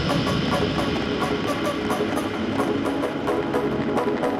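House/techno DJ mix playing over a club sound system, in a breakdown: the deep bass and kick drop out at the start, leaving sustained synth chords over ticking percussion at about four a second.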